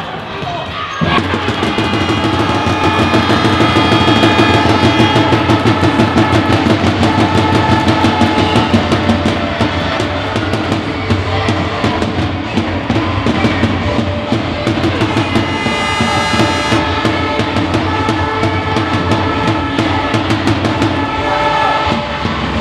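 Goal music with a steady drum beat played over a sports hall's PA, starting suddenly about a second in, after the equalising goal.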